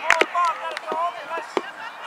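Spectators' applause for a goal thinning out to a few scattered hand claps, with voices calling out between them.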